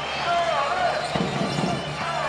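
Basketball being dribbled on a hardwood court, the ball bouncing over the steady murmur of an arena crowd.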